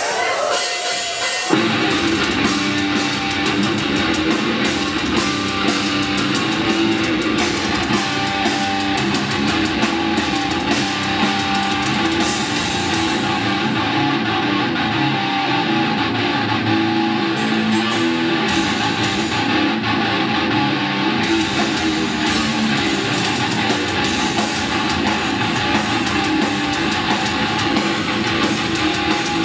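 Heavy metal band playing live: distorted electric guitars and a drum kit come in loud about a second and a half in and drive on steadily.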